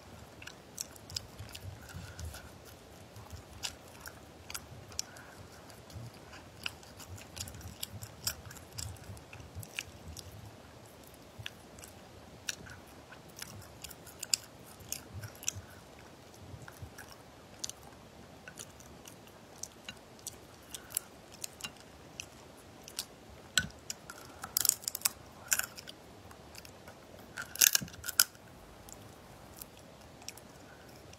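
Close-up chewing and wet mouth sounds of a person eating cooked crayfish, with many sharp clicks and crackles from the shells. The clicks grow loudest in two clusters near the end.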